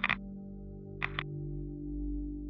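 Trailer score: a steady, low ambient drone of held tones. Two brief double pulses of sharper sound effect cut in over it, one at the start and one about a second later.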